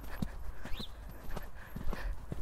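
Hoofbeats of a pony cantering on a wet sand arena, a string of short, dull thuds.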